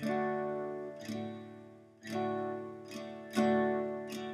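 Steel-string acoustic dreadnought guitar strumming a D major chord. About four strums fall roughly a second apart, each left to ring and fade.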